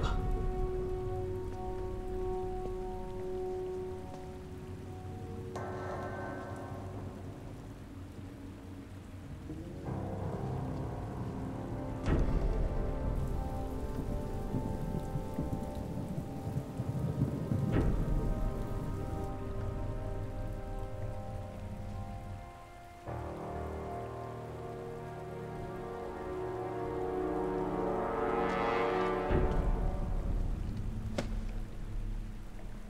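Tense dramatic film score: sustained chords that shift every few seconds over a low rumbling noise, with two heavy hits about twelve and eighteen seconds in, swelling louder near the end.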